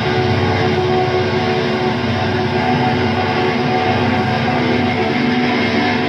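A psychedelic rock band playing live: a loud, steady wall of amplified guitars and drums with notes held throughout.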